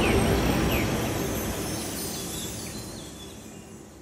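The tail of a logo intro's sound effect: a low noise with a few short chirps, fading out steadily.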